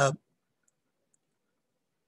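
A man's brief "uh", then near silence broken only by two very faint clicks about two-thirds of a second and just over a second in.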